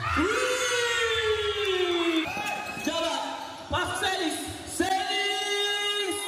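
A voice holding long sung notes, each one to two seconds, the first sliding slowly down in pitch, with a few short knocks between the notes.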